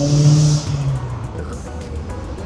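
A car engine accelerating, its pitch rising slowly, loudest just after the start and fading out about a second in, over low street rumble.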